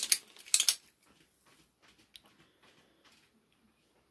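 Metal finger blades of a handmade Freddy Krueger-style glove clinking against each other as the fingers flex: a sharp clink at the start and a couple more about half a second in, then a few faint ticks.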